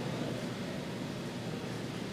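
A steady, even hiss with no distinct event in it.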